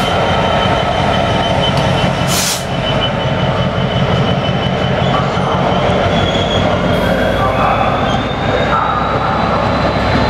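GBRf Class 66 diesel locomotive and its train of hopper wagons passing close by, loud and steady: the locomotive's two-stroke diesel engine drones under the rumble of the wagons' wheels on the rails. A thin, high wheel squeal runs through it, slowly rising in pitch in the second half, with a short hiss about two and a half seconds in.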